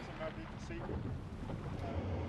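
Rigid inflatable boat running at sea: engine and wind noise buffeting the microphone, with brief snatches of voices.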